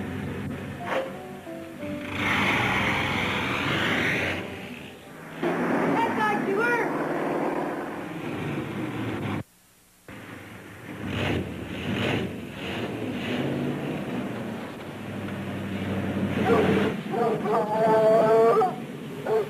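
Film soundtrack: background music over a hot rod roadster's engine revving and driving off, with voices mixed in. The sound cuts out briefly just before halfway.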